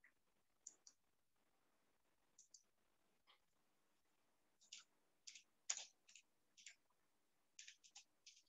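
Near silence with about a dozen faint, sharp clicks at irregular intervals, coming more often in the second half.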